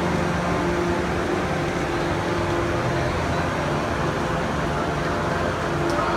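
Steady mechanical hum with a few low steady tones held throughout, over a constant noisy rush.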